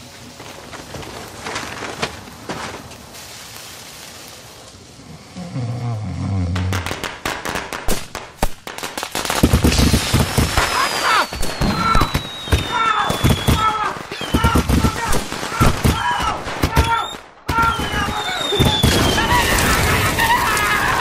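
Fireworks going off in a room: a rapid run of pops and crackles with whistling rockets, one long falling whistle about ten seconds in, after a quieter first half. A brief break near the end, then a loud blast.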